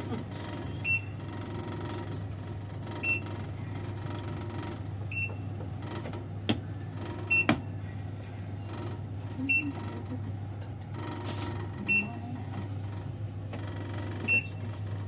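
OTIS elevator car running down with a steady low hum, a short high beep about every two seconds, and two sharp clicks between six and eight seconds in.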